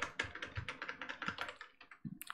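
Computer keyboard typing: a quick run of key clicks, thinning out near the end.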